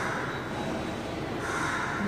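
A pause in a woman's speech filled by steady breathy noise, with a drawn-in breath in the last half second before she speaks again.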